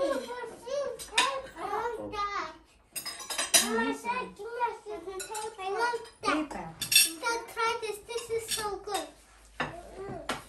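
Cutlery clinking against plates and dishes as people eat at a dinner table, with sharper clinks about three seconds in and again around seven seconds. Children's voices chatter through it.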